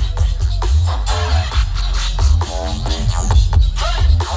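Live electronic hip-hop music played loud through a concert PA, with a heavy pulsing bass and a quick beat, heard from within the crowd.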